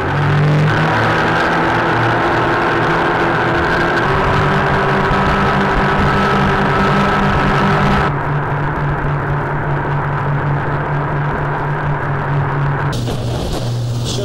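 Twin outboard engines of an Atlantic 85 inshore lifeboat running at speed, a steady engine note under a rush of wind and water. About eight seconds in the hiss drops and the note lowers slightly as the boat eases off.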